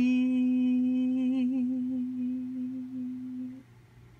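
A woman's voice holding one long sung note at the end of a chanted 'light language' phrase, wavering slightly and fading out after about three and a half seconds.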